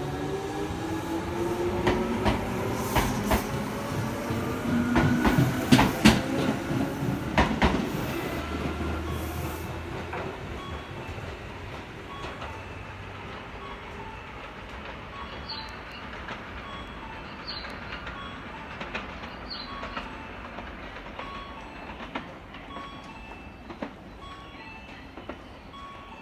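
A six-car electric commuter train pulls away from the platform. Its motors whine in several tones that rise in pitch as it gathers speed, and the wheels clack over rail joints; it is loudest about six seconds in, then passes away by about ten seconds in. After that only a quieter background is left, with a short tone repeating about once a second.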